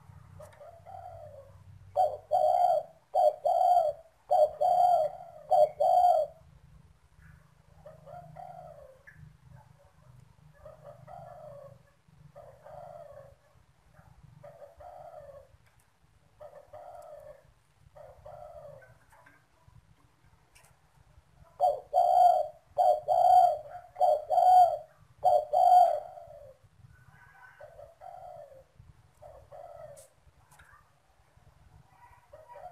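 Spotted dove cooing. Twice there is a loud run of about five coos in quick succession, lasting about four seconds. Between the runs come softer single coos every second or two.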